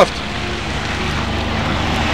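Steady low rumbling background noise with a faint hiss, growing slightly louder.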